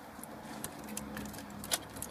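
Faint scattered clicks and handling noise, one slightly louder click near the end, over a faint steady low hum.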